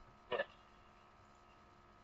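A single short vocal sound, a brief grunt-like syllable about a third of a second in, then near silence with a faint steady hum.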